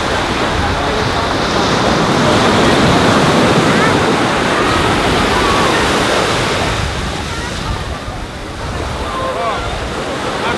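Ocean surf washing up on a sandy beach, with wind buffeting the microphone; the noise eases slightly near the end.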